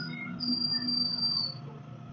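Acoustic guitar's last notes ringing on and dying away at the end of a solo, with a thin, steady high tone lasting about a second.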